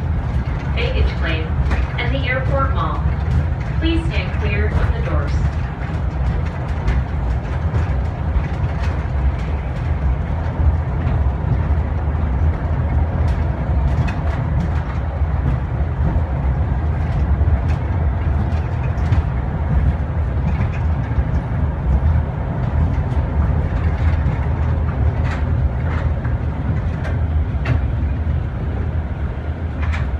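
Airport people-mover tram running along its guideway, heard from inside the car: a steady low rumble with scattered light clicks and knocks.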